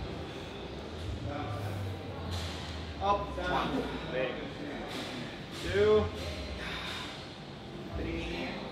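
Indistinct voices over a steady low hum, with two short, louder vocal sounds: one about three seconds in and one about six seconds in.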